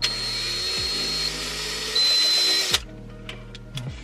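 Power drill-driver running for about two and a half seconds as it backs a screw out of a car head unit's metal casing. It gets louder about two seconds in, then stops suddenly.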